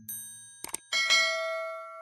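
Subscribe-button animation sound effect: a short ding, a mouse click, then a bright bell chime that rings for about a second and cuts off suddenly.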